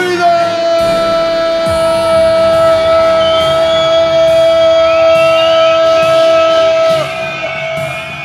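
Electronic dance music from a DJ set over a club sound system: a pitch sweeps up into one long, loud held note, which drops away about seven seconds in.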